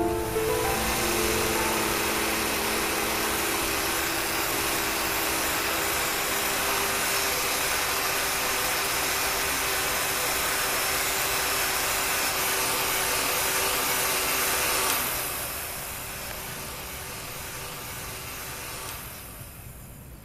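Handheld hair dryer blowing steadily, a constant rushing noise, with soft background music fading out over the first several seconds. About fifteen seconds in the blowing drops to a lower level, and it fades further near the end.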